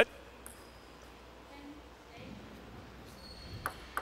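Quiet sports-hall ambience with a few faint, light clicks of a table tennis ball, one about half a second in and a couple near the end, as the server handles the ball before serving.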